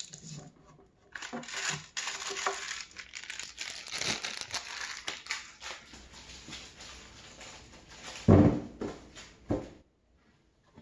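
Plastic packaging crinkling and rustling as drawer hardware is unwrapped and handled, then two knocks near the end.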